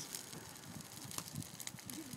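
Faint outdoor background hiss with a few light, sharp clicks about a second in and again near the end.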